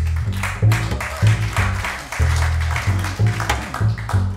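Live acoustic band playing an instrumental passage: an upright double bass plucks a steady run of low notes under brighter strummed strings.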